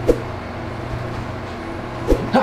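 Window air conditioner running with a steady hum, with one short knock right at the start.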